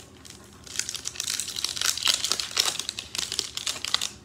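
Foil wrapper of a Pokémon booster pack crinkling and tearing as it is opened by hand: a dense run of rapid crackles that grows louder about a second in.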